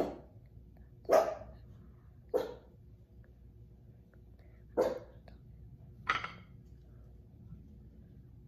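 A dog barking off and on: five separate short barks spread unevenly over about six seconds.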